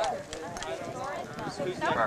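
Several people talking over one another, with a few short, light knocks among the voices.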